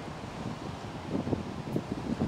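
Outdoor ambience with wind buffeting the microphone, steady and fairly quiet, with a few faint, muffled low sounds from about a second in.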